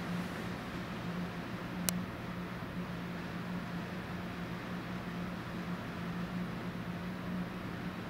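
Steady background hiss with a low, even hum, and a single faint click about two seconds in.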